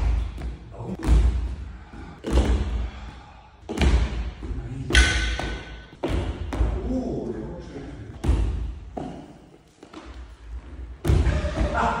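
Unicycle jumps and hops landing on a wooden gym floor: a series of heavy thumps, about nine of them, one every second or two, each ringing on in the large hall.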